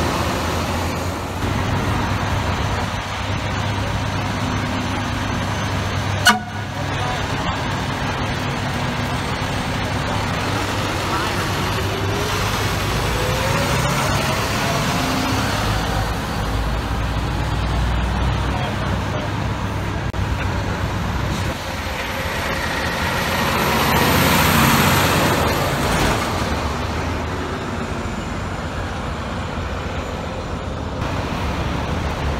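Fire trucks' diesel engines running as the rigs pull away through city streets, with traffic noise throughout. A sharp bang about six seconds in, a slowly rising whine in the middle, and a swell of noise near the end as a rig passes close by.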